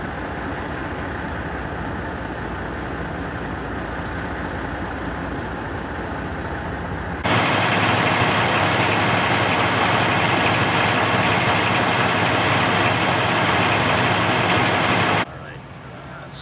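Fire engine idling steadily, heard at a moderate level at first, then much louder and close up from about seven seconds in, with a steady engine drone. It cuts off suddenly about a second before the end.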